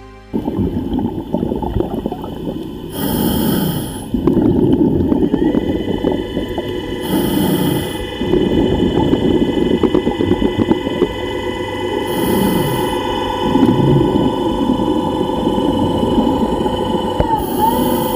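Underwater recording of a scuba diver's regulator breathing in a slow cycle: a hiss of inhalation every four to five seconds, then bubbling exhalation. Under it runs a steady machinery hum with several held tones from a tourist submarine close by.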